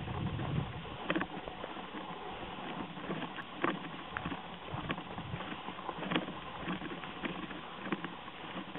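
Footsteps crunching on a gravel track, irregular sharp crunches about once a second over a steady rustling noise.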